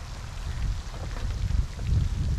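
Uneven low rumble of wind buffeting the microphone, with a few faint rustles from a fabric carry bag being handled and shaken open.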